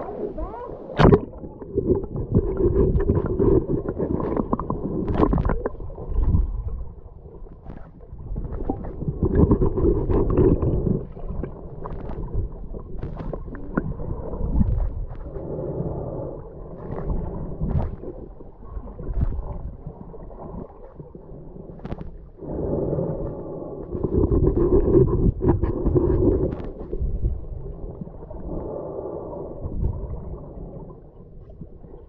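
Muffled underwater sound from a camera held below the surface while snorkelling: water gurgling and rumbling, swelling and fading every few seconds, with a sharp knock about a second in.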